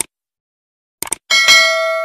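Subscribe-button animation sound effects: a click, then a quick double click about a second in, followed by a bell ding that rings on and slowly fades.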